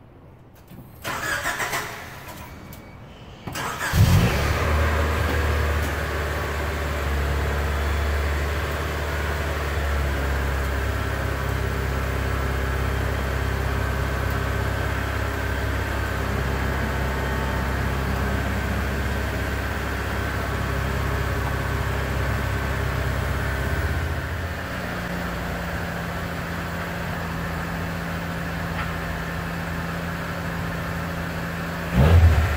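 1989 Honda CRX Si's four-cylinder engine starting about four seconds in, then idling steadily. Later the idle drops to a quieter, steadier note.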